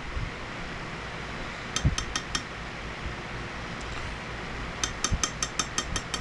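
A metal spoon clinking lightly against glass and a plastic jar as glitter is scooped and tapped off into a measuring cup of heated plastisol. There are about four quick taps two seconds in and a faster run of about seven near the end.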